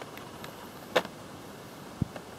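A single sharp click about halfway through, with a couple of faint ticks before it: the clear plastic blister packaging of a boxed action figure being handled.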